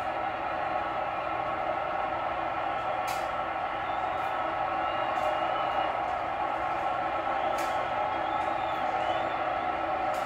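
Steady ballpark crowd noise from a television broadcast of a baseball game, heard through the TV's speaker, growing slightly louder as the pitcher sets to throw. Two sharp clicks sound, about three seconds in and near three-quarters of the way through.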